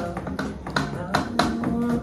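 A live band playing an instrumental passage: sharp drum hits from an electronic drum kit at a steady beat over electric guitar and keyboard chords.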